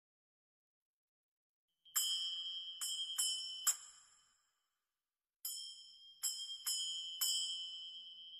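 High, clear bell chimes struck in two groups of four, the first group starting about two seconds in and the second about five and a half seconds in, each strike ringing on and fading, as part of a musical intro.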